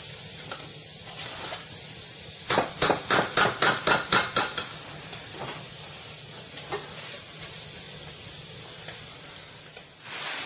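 A metal spoon stirring and scraping food in a pot: a quick run of about a dozen strokes, some five a second, about two and a half seconds in, then a few lone clicks, over steady hiss and a low hum.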